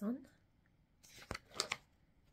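A stiff card cross-stitch kit chart being handled: a sharp tap about a second in, then a few quick rustles. The last syllable of a spoken word is heard at the start.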